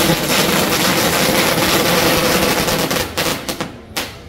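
A string of firecrackers going off in a dense, continuous crackle of rapid bangs. About three seconds in, it thins to a few separate pops, then ends with one last sharp bang.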